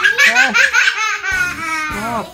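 A young girl laughing loudly: quick ha-ha-ha pulses for about the first second, then longer high-pitched squealing laughs.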